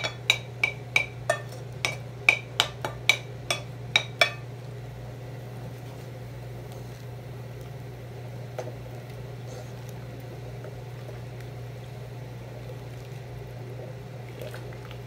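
A wooden spoon knocking against the rim of a ceramic bowl to tap grated vegetables into a pot: about a dozen sharp clinks with a short ring, roughly three a second, stopping about four seconds in. After that a steady low hum goes on under quiet stirring of the soup.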